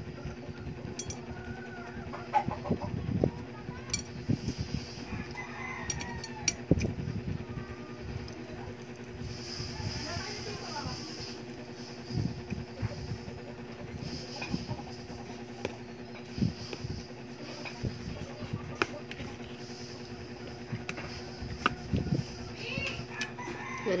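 Eating sounds at a table: chewing, with the spoon clicking and scraping on a ceramic plate in irregular short knocks. A steady low hum runs underneath, with faint animal calls in the background.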